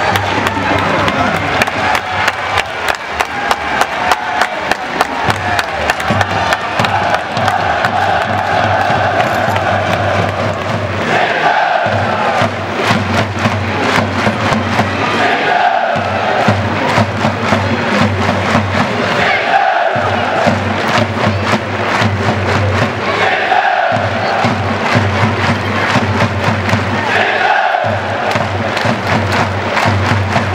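Football supporters chanting in unison in the stand behind the goal, a sung phrase repeating about every four seconds over a steady rhythmic beat.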